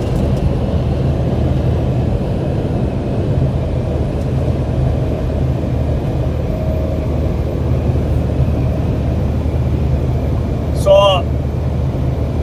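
Steady low road and engine rumble heard from inside a vehicle's cabin while it cruises at highway speed. A brief voice comes in near the end.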